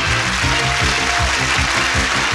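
Game show opening theme music with a steady beat, over a studio audience applauding.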